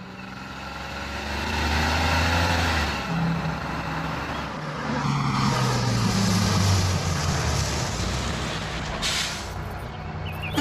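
Bus engine running as the bus approaches, growing louder over the first two seconds, its low note shifting. A brief hiss comes about nine seconds in.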